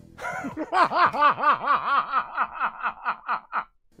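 A person laughing: a long run of rapid "ha-ha-ha" bursts, about four or five a second, that slowly fade and cut off just before the end.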